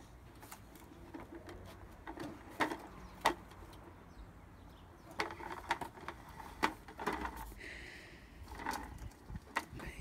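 Scattered clicks and knocks from a plastic toy lawn mower being pushed by a toddler, over a faint low background hum.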